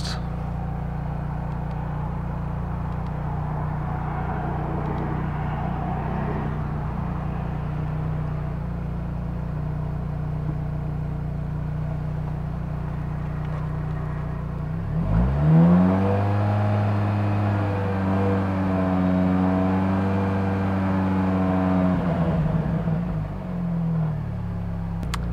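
Mini Cooper engine idling steadily. About fifteen seconds in it is revved up, held at a raised speed for about seven seconds, then dropped back to idle. This is the raised-rev stage of a charging-system test, with the alternator charging normally.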